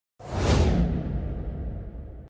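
A whoosh sound effect with a deep low rumble under it, starting suddenly a moment in and fading away over about a second and a half: the sting of an animated channel-logo intro.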